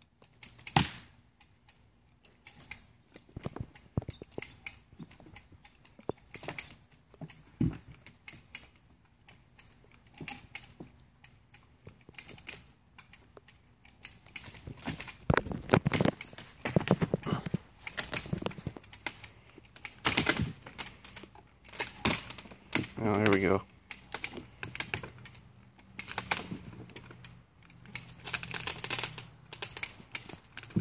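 Hand ratchet on a lifting strap being worked, clicking in short runs that grow busier about halfway through as the strap tightens on a concrete slab.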